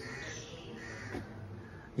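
A few faint, harsh bird calls, two short calls about a second apart, over a quiet background.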